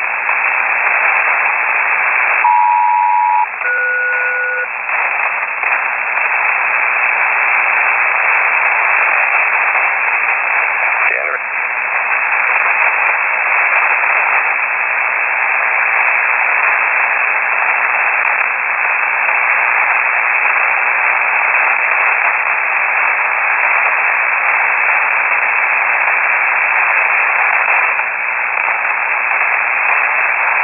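Upper-sideband HF radio static, a steady hiss on the North Atlantic air-traffic channel. About two and a half seconds in, a SELCAL call is sent: two steady tones together for about a second, a short gap, then a second pair of different tones for about a second, the signal that rings an aircraft's selective-calling alert.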